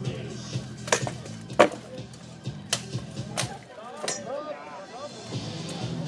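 Armoured fighters' one-handed swords striking plate armour and shields in a tournament bout: about five sharp metallic clanks with a short ring, the loudest about a second and a half in.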